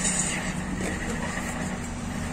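Steady low background rumble with a faint, even hum.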